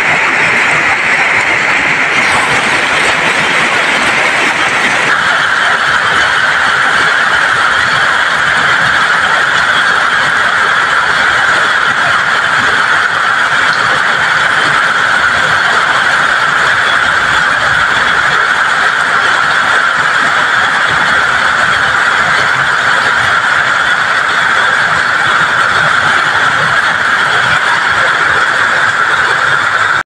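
Heavy rain pouring onto a flooded road, a loud steady hiss, with vehicles driving through the standing floodwater.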